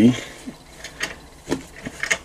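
A few light clicks of small metal parts, about half a second apart, as a scroll saw's blade clamp and its bicycle-type quick-release fitting are handled.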